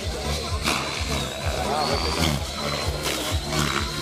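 Electric radio-controlled helicopter in flight: a high, steady motor whine that wavers slightly in pitch over the low drone of the rotor, with voices in the background.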